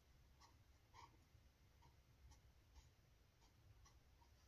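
Faint scratching of a pen tip on notebook paper as characters are written: short separate strokes about every half second, over a low steady room hum.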